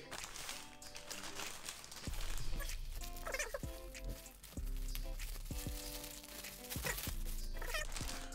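Background music of held notes, with a bass line coming in about two seconds in, over the faint crinkling of a plastic shipping bag being handled and opened.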